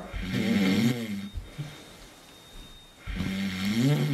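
A man snoring: two long snores about three seconds apart, each lasting about a second.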